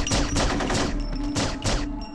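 Gunfire in a firefight: a rapid, uneven string of about ten shots in two seconds, each with an echoing tail.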